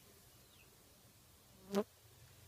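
A fly buzzing past close to the microphone: a brief buzz that swells and cuts off suddenly near the end, against otherwise quiet background.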